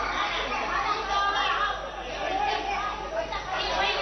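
Several people talking at once, their voices overlapping in a continuous chatter.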